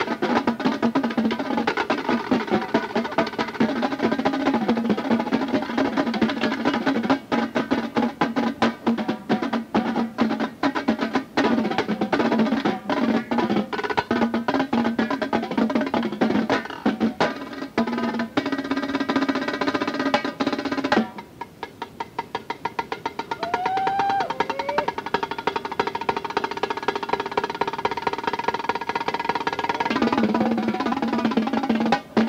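A drum corps tenor line, multi-tenor drums (quads), playing together in rehearsal: fast runs and rolls across the tuned drums. About 21 seconds in, the playing drops to a softer passage. It is heard from an old cassette tape recording.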